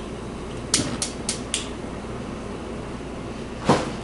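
Gas stove burner igniter clicking four times in quick succession, about four clicks a second, then a short louder burst near the end as the burner under the skillet lights, over a steady low hum.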